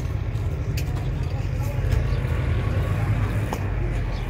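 Steady low rumble of a motor vehicle, with faint indistinct voices in the background.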